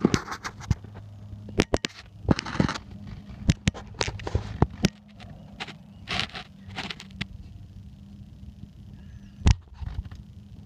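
Irregular clicks, knocks and scrapes from handling the camera and light against the exhaust parts under the vehicle, with one louder knock near the end, over a steady low hum.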